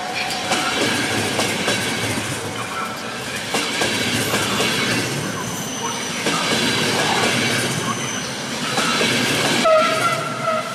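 Long-distance passenger coaches rolling past at close range, their wheels clattering over rail joints with irregular clicks and a faint high squeal now and then. A short loud pitched tone starts right at the end.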